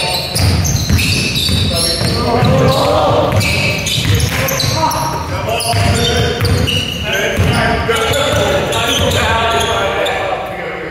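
Basketball bouncing and thudding on a wooden sports-hall floor at irregular intervals during play, with players' voices calling out, all echoing in the large hall.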